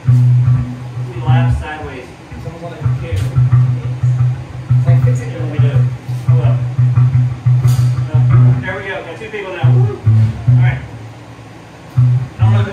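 A rock band jamming loudly: an electric bass plays a riff of low notes broken by short pauses, over electric guitar, with a few drum or cymbal hits.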